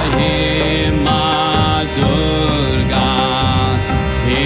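Chanted devotional music: a voice sings short repeated mantra phrases, about one a second, over a steady low drone.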